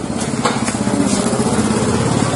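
An engine running steadily close by, growing slightly louder, with a few faint clicks.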